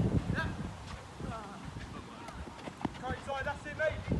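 Players' voices calling out during a handball match, loudest near the end, with a few sharp knocks of play such as the ball being thrown, caught or bounced.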